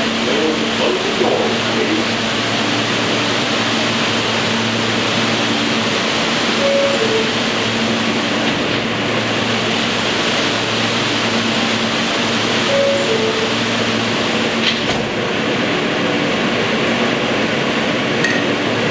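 Inside a running R160A New York subway car: steady rail and running rumble with a steady low hum. Twice, about six seconds apart, a short two-note falling tone sounds over it.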